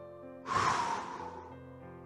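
Gentle background music with steady held notes; about half a second in, a person breathes out hard for about a second while holding a stretch.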